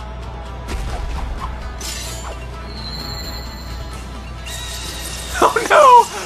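Anime episode soundtrack: background music with sudden fight sound effects, then a loud voice crying out near the end.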